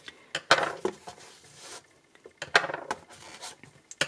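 Knitter's Pride Waves aluminum crochet hooks being pulled from the elastic loops of their case and set down on a tabletop: a few light clicks and taps with soft rustling, the sharpest about half a second in and again around two and a half seconds.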